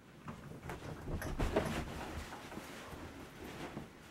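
Quick footsteps and a heavy thump, a person dashing across a bedroom and landing on a bed, the loudest impact about a second and a half in. This is followed by the rustle of blankets as he settles under them.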